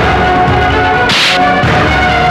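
Dramatic film background score with sustained notes, cut by one short, sharp swish sound effect about a second in.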